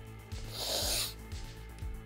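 A person snorting once through a cocktail straw, a short, sharp intake of air lasting about half a second, starting about half a second in.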